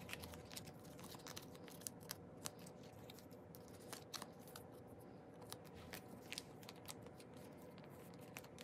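Faint, scattered clicks and light rustles of plastic card sleeves and photocards being handled and slid into binder sleeve pockets.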